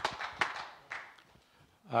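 Speech in a hall, with a few sharp clicks in the first second, then low room tone until a man says "right" into a microphone at the end.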